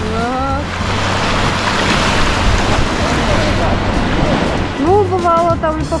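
Rushing whitewater of a river rapid, a loud hiss of water that swells through the middle and eases near the end. A voice is heard briefly at the start, and speech comes in near the end.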